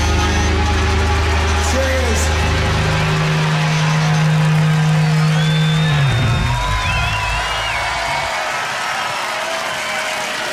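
The closing chord of a live rock band holds and rings out, dying away about six seconds in, over a crowd cheering. A high wavering whistle sounds over the top near the middle.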